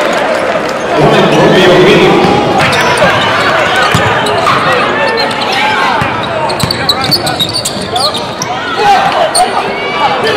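Live basketball game sound in a gym: a ball dribbling on the hardwood court with sneakers squeaking, and players and spectators calling out.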